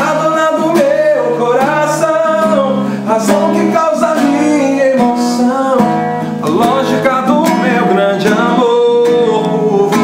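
A man singing with his own strummed acoustic guitar, his voice carrying a melody that bends and glides over the steady guitar chords.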